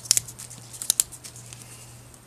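A few short snaps and crackles of leaves being pulled off a Mandevilla (Dipladenia) stem cutting. They come in two clusters, one near the start and one about a second in.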